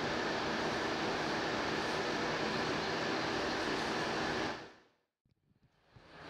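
Steady whir of an electric fan running, which fades out to silence near the end.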